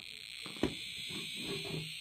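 EMF detector giving a steady high-pitched electronic buzz as it picks up the house's electrical wiring, which she puts down to wires in the walls. A single sharp knock comes about half a second in.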